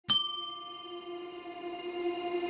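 A single bell-like ding struck once right at the start, its high overtones dying away within about a second while the lower tones keep ringing.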